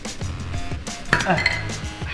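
Light metallic clinking and knocking as a small metal centre cap is handled against a bare aluminium wheel.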